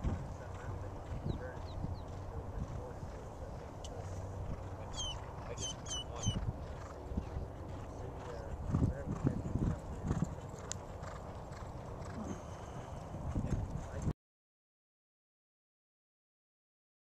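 Hoofbeats of thoroughbreds galloping on a dirt track, uneven low thuds under a steady outdoor rumble, with a few high chirps about five to six seconds in. The sound cuts off to silence near the end.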